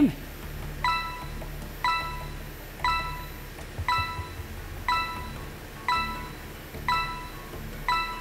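Game-show countdown timer ticking down: a bright electronic chime struck once a second, eight times, each note dying away quickly.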